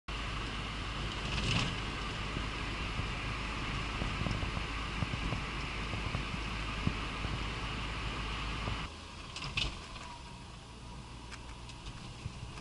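Road noise inside a small car's cabin at about 70 km/h: a steady drone of engine, tyres and wind. About nine seconds in it cuts suddenly to the much quieter hum of slow city driving, with a few sharp clicks.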